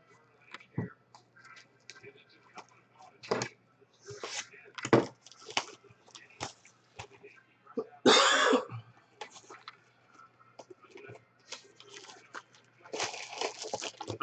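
Cardboard trading-card hobby box being handled and opened and its packs set down in a stack: scattered taps and knocks, with a louder rasp of cardboard about eight seconds in.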